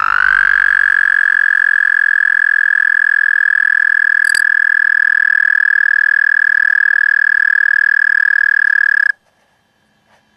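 A male American toad trilling: one high, steady, musical trill that slides up slightly as it starts, lasts about nine seconds and cuts off abruptly.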